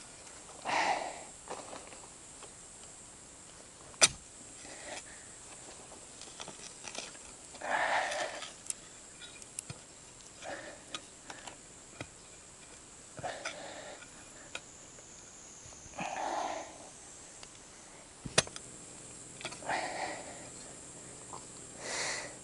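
A man breathing hard from exertion, loud exhalations coming about every three seconds as he works roots and stones out of the soil. Two sharp knocks cut in, a few seconds in and near the end.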